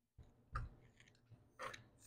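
Two faint clicks about a second apart, from a screwdriver and a flange bolt being handled as bolts are started by hand into an engine's gear reduction cover.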